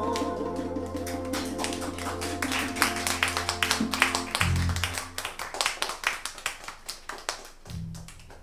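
The last held note of a song fades out, then a small audience claps; the applause thins out over the last few seconds.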